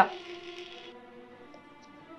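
Faint background score: soft held notes that fade away over the first second or so.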